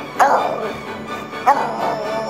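A puggle barking twice, about a second and a half apart, each bark starting sharp and falling in pitch, over background music.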